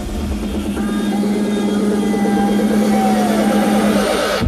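Electronic dance music in a build-up: the kick drum and bass drop out, leaving a held low synth note under a fast repeating synth pattern that rises in pitch and grows louder.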